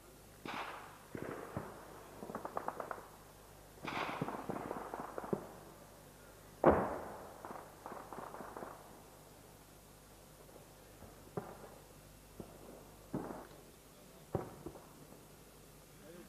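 Gunfire: short bursts of rapid automatic fire and single shots at varying distances, with one loud bang about seven seconds in that rings out briefly, then a few scattered single shots near the end.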